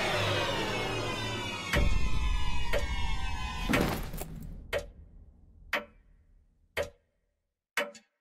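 Horror trailer sound design: a dense falling musical swell ends in a deep boom. Sharp, ticking hits follow about once a second, with near silence between the later ones.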